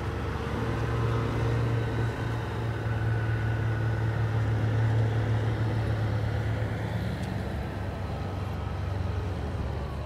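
Diesel engine of a livestock tractor-trailer running, a steady low hum that grows louder about a second in and eases off after about seven seconds.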